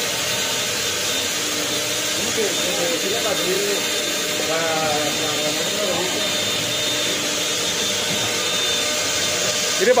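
Countertop blender running at a steady whir, with faint voices talking underneath.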